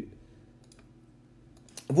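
A short pause in a man's speech, with a few faint clicks in it: a pair about two-thirds of a second in and more just before he speaks again near the end.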